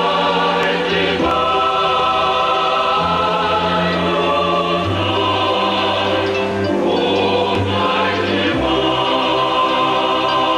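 A choir singing slowly in long held chords, the harmony changing every second or two over a low bass line.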